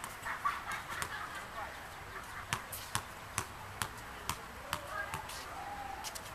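Soccer ball bouncing on a hard tennis court and being kicked: a run of sharp smacks about two a second through the middle, with a few scattered ones before and after.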